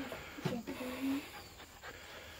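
A 12-week-old Bernese mountain dog puppy panting softly, with a short faint steady tone near the middle.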